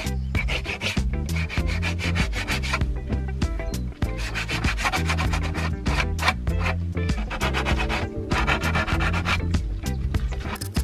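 Sandpaper rubbed by hand over the edge of a wooden shelf, in runs of quick back-and-forth strokes with short pauses between them.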